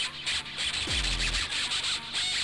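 Instrumental stretch of a harsh digital hardcore electronic track: a dense wash of distorted, hissing noisy beats, with one deep bass drum hit that drops steeply in pitch about a second in.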